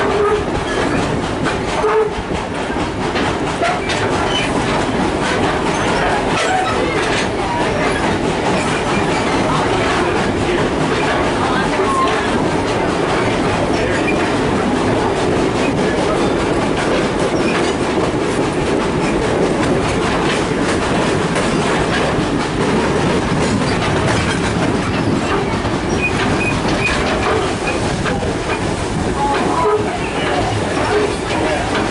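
Passenger train heard from onboard, rolling steadily along the track: a continuous running noise of steel wheels on rails with scattered clicks.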